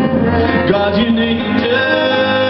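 Live music on a grand piano with a sustained bowed-string accompaniment, an instrumental passage between sung lines.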